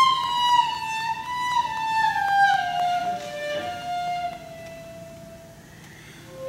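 Solo cello bowing a slow melody high in its range, the line sinking step by step in pitch, then dying away to a soft held note over the last couple of seconds.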